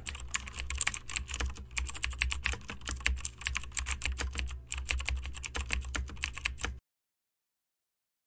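Computer keyboard typing: a fast, uneven run of keystrokes over a low steady hum, with two brief pauses. The keystrokes stop abruptly about a second before the end.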